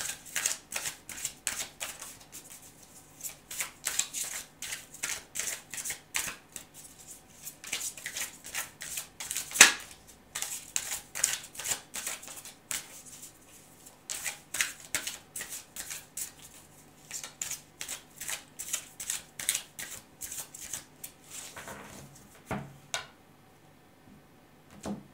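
A deck of tarot cards shuffled overhand by hand: a quick run of soft card slaps and flicks, pausing briefly in the middle. A few knocks near the end as the deck meets the tabletop.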